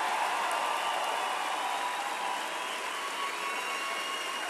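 Large theatre audience giving a standing ovation: sustained applause, easing off slightly toward the end.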